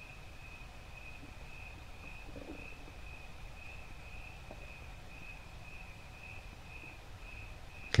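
An insect trilling at one steady high pitch, with a faint pulse to it, over a low room rumble.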